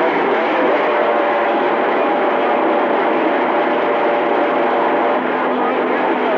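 CB radio receiver picking up a signal with no clear speech: a loud, steady rush of static with faint, garbled voices in it, and a thin steady whistle from about one second in until about five seconds.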